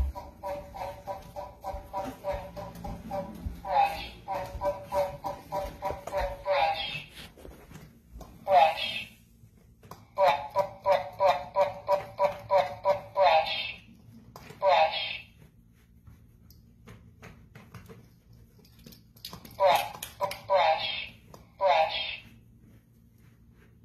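Recordable talking button on a pet soundboard, pressed again and again by a cat's paw, replaying a short recorded voice saying 'brush' in quick repeats, about three a second. It comes in runs of a few seconds with pauses between: the cat is asking to be brushed.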